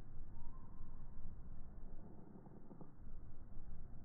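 Low, rumbling outdoor background noise that rises and falls in level and eases a little past the middle, with a faint short high tone about half a second in.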